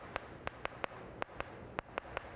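Chalk on a chalkboard while writing: a quick, uneven series of sharp taps and short scrapes, about four or five a second.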